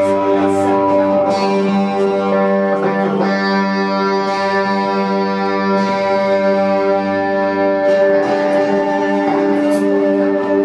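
A psychedelic space-rock band playing live: a steady drone of held notes rings out, with plucked-string sounds over it.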